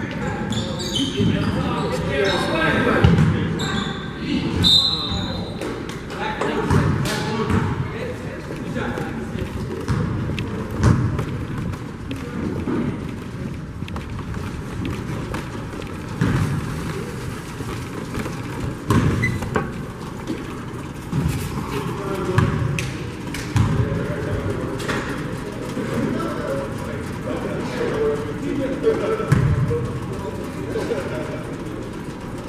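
A basketball bouncing on a hardwood gym floor, irregular thumps with sharp short sounds of play between them, over a continuous background of voices from players and spectators, with the echo of a large gym.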